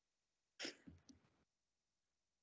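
Near silence, broken about half a second in by one brief, faint, breathy sound from a person, with two smaller soft blips just after.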